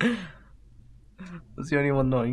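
A person's breathy sigh at the very start, falling in pitch and fading within half a second, followed near the end by a man's voice starting to speak.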